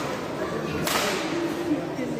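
Badminton racket striking a shuttlecock once, a sharp crack about a second in that rings on in the hall, over a background of spectator chatter.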